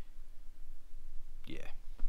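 A man pauses in his talk, leaving quiet room tone with a faint steady hum, then says "yeah" near the end.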